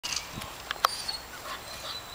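Young Belgian Malinois making vocal sounds as it strains forward on its leash, with a few sharp clicks, the loudest a little under a second in.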